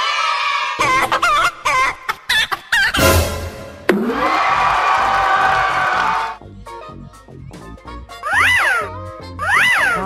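Comedy sound effects over background music: cartoon chicken clucking, then a burst of laughter and cheering around the middle, and two whistle swoops that rise and fall near the end.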